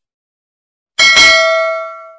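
A single bright bell ding from a subscribe-animation sound effect, struck about a second in and ringing out over about a second as it fades.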